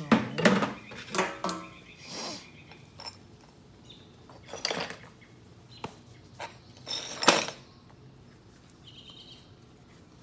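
Stone preform being worked by hand with an antler tool during flintknapping: a handful of sharp, short clicks and clinks, a few ringing briefly, spaced irregularly with the loudest near the start and about seven seconds in, as cortex is knocked off the edge.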